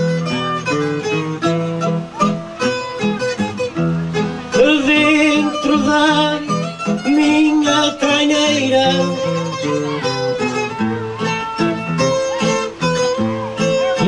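Acoustic guitar and other plucked strings playing a melodic instrumental break between the sung verses of an improvised cantoria.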